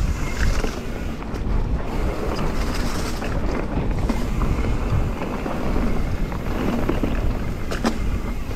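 Mountain bike riding over a leaf-covered dirt singletrack: a continuous rolling rumble of tyres and bike rattle, with wind buffeting the camera microphone. A couple of sharp clacks come near the end.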